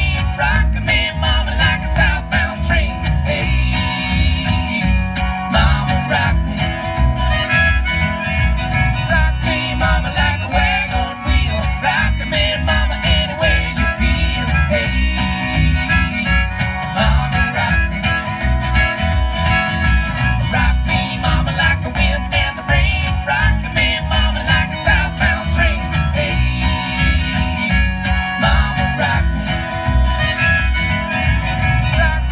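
Live acoustic guitar strummed in a steady country rhythm with a harmonica playing the melody over it, amplified through a stage PA: an instrumental break with no singing.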